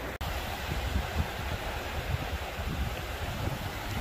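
Steady rush of water from shallow river rapids, with wind gusting on the microphone in low rumbles that come and go. The sound drops out for an instant just after the start.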